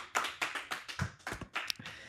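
A single person clapping, quick even claps at about five a second that grow fainter and die out near the end, a short round of applause for a top grade.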